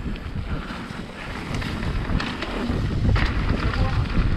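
Mountain bike rolling down a dirt trail: tyre rumble and frame rattle with scattered clicks, under wind buffeting the GoPro microphone, growing louder over the second half.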